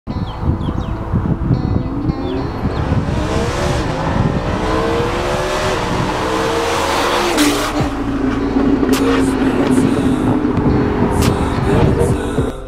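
Lamborghini Huracan LP610-4's naturally aspirated V10 on a Fi Exhaust valvetronic catback, driving past at speed. Its engine note climbs in several rising sweeps as it accelerates, drops sharply about seven seconds in, then holds a steady tone.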